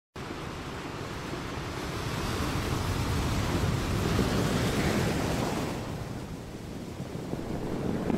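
Sea waves washing on a shore: a steady rush of surf that swells over the first few seconds, ebbs away about six seconds in, then rises again.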